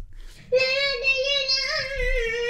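A child's voice singing one long held note that starts about half a second in, wavering slightly in pitch.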